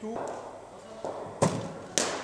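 Two sharp knocks about half a second apart near the end: a cricket ball pitching on the net's artificial matting and then meeting the bat in a defensive block.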